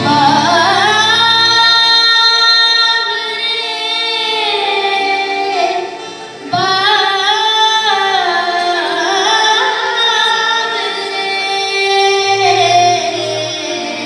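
A child singing a Hindi devotional bhajan into a microphone in long, held, gliding notes, with harmonium and acoustic guitar accompaniment. The singing breaks off briefly about six seconds in, then resumes.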